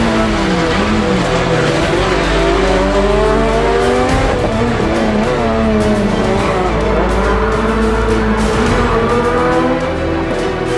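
Peugeot 207 rally car engine revving hard through a run of corners, its pitch climbing under acceleration and dropping as it brakes and shifts down, several times over.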